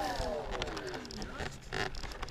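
Talon FPV plane's electric motor and propeller spinning down just after a throttle test. A falling whine fades over about a second and a half, with a few light knocks near the end and low wind rumble on the microphone.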